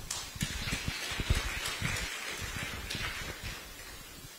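High-heeled footsteps on a hard stage floor, a run of short knocks, with a rustling hiss that swells and fades over about three seconds.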